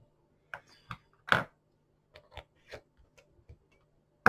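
A handful of light, irregular clicks and taps from small objects being handled at a fly-tying bench, the loudest about a second and a half in.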